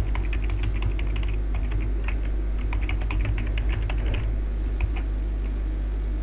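Computer keyboard typing: a quick, irregular run of key clicks that stops about five seconds in, over a steady low hum.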